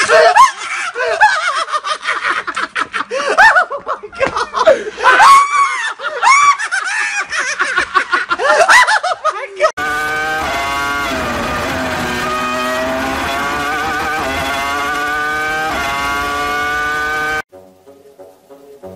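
A man yelling and shrieking in fright, with laughter, for about ten seconds. After a cut comes a steady droning pitched tone that slowly dips and rises for about seven seconds and then stops suddenly.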